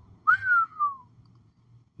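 A man whistling one short note that slides downward in pitch, lasting under a second.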